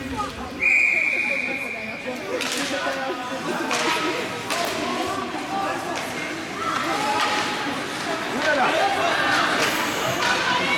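A whistle gives one long, steady blast about half a second in, lasting over a second. After it, sharp clacks of sticks and puck on the ice ring out over the chatter of spectators in the rink.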